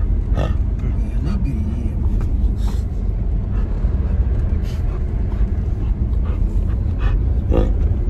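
Steady low road rumble inside a moving car's cabin, with a few short, soft noises on top, one a little louder near the end.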